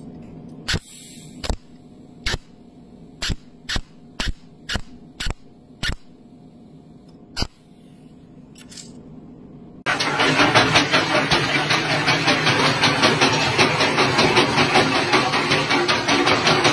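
About ten sharp electric snaps from a pulse spot welder's electrode zapping the ends of a thin metal tube together, spaced irregularly over the first eight seconds over a faint hum. About ten seconds in it cuts to the loud, steady clattering noise of a coal-loading scraper machine and conveyor running with coal.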